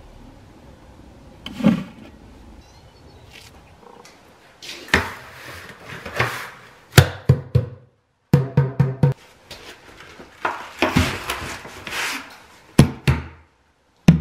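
Instrumental background music with knocking, drum-like percussion and low notes. It comes in about five seconds in and has a brief full dropout just past the middle.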